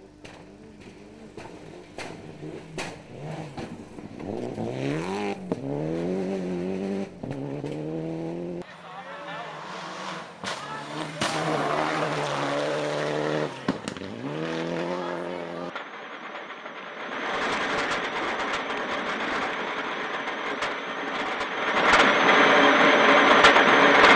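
Four-wheel-drive rally cars at full speed on a dirt stage, engines revving up and dropping back at each gear change as they pass, with gravel spray. The sound cuts abruptly between passes about a third and two thirds of the way in. Near the end it switches to louder, harsher engine noise heard from inside the car.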